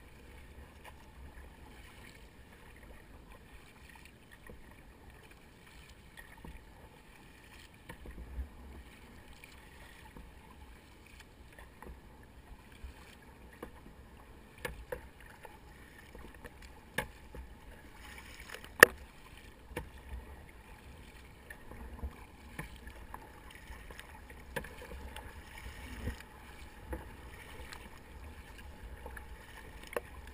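Fluid Bamba sit-on-top plastic kayak being paddled on the sea: paddle strokes and water washing along the hull. There are scattered sharp knocks, the loudest a little past halfway.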